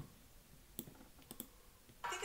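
A few faint mouse clicks over near silence, as the paused video is clicked back into play.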